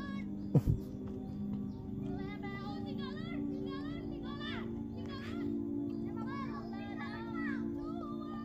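Children's high voices calling and chattering at a distance over steady background music, with one sharp thump about half a second in.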